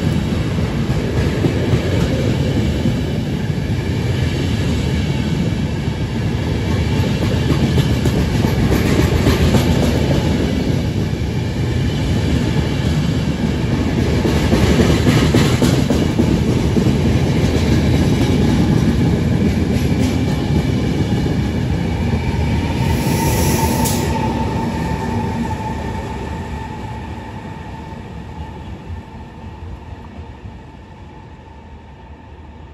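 Intercity Notte night train's passenger coaches rolling past: a steady rumble of wheels on rail with clickety-clack over the rail joints. A brief high squeal comes about three-quarters of the way through, then the sound fades as the last coach passes and the train moves away.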